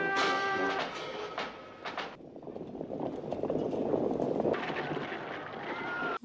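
Film soundtrack: a brass marching band with drum playing, breaking off about two seconds in. It gives way to a low, dense rumbling din that builds toward the end: the massed hoofbeats of a cavalry charge.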